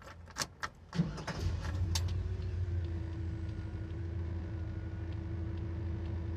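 Keys jangling and clicking in an ignition, then about a second in a car engine starts and settles into a steady idle.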